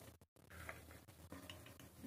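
Near silence: faint room tone, cut to complete silence for a moment near the start.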